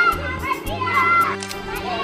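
Children's voices shouting and calling to one another during an outdoor game, over background music.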